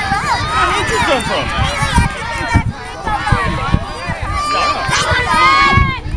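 Overlapping voices, many of them high-pitched young children's, shouting and chattering together. A few dull low thumps are heard through the middle and near the end.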